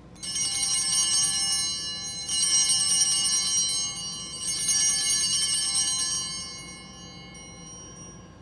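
Altar bells rung three times in a row, each peal of bright, high ringing lasting about two seconds, the last fading out near the end. They mark the elevation of the consecrated host.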